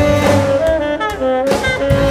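Chamber orchestra with saxophone playing an instrumental passage of a pop-song arrangement, held melodic notes over strings, with a new phrase entering about one and a half seconds in.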